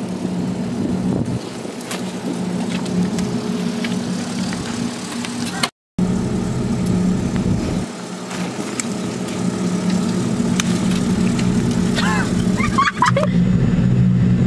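A steady low engine-like hum runs throughout, cut off by a brief dropout just before the middle. A voice is heard briefly near the end.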